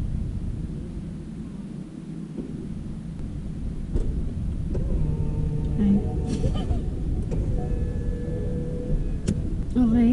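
Car engine idling, heard from inside the cabin as a steady low rumble, with a sharp click about four seconds in and another just before the end.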